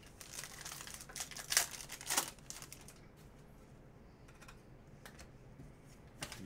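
Trading cards and their packaging being handled on a table: a run of crinkling and rustling over the first two seconds or so, loudest around one and a half and two seconds in, then quieter handling with a few faint clicks.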